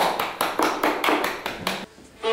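A quick, even run of sharp taps, about five a second, that stops just before the end.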